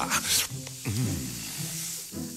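A man's cartoon sniff followed by a low, pleased hum, drawn in by the smell of freshly cooked waffles. A faint sizzle runs underneath.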